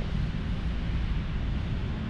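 Steady low rumbling background noise with a faint hiss and no distinct events.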